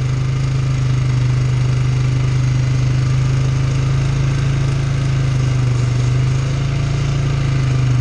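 Polaris ATV engine running at a steady pitch while the quad rides along, easing off slightly about six seconds in.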